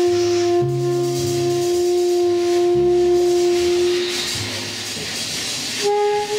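Live jazz quartet of tenor saxophone, trumpet, double bass and drums. A horn holds one long steady note over changing double bass notes, then stops about four seconds in, leaving the bass and a soft high hiss.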